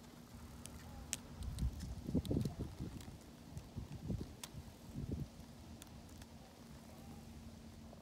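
Low thumps and rustling from a handheld camera moving in long grass, bunched between about one and a half and five seconds in, over a faint steady hum, with scattered faint high clicks.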